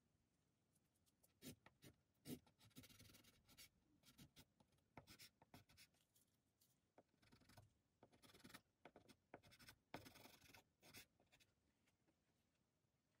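Faint scratching strokes of a soft pastel stick on non-sanded paper, coming in short irregular runs with small taps between them.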